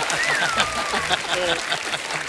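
Studio audience applauding after a joke, with a voice speaking over it and a falling tone in the first second.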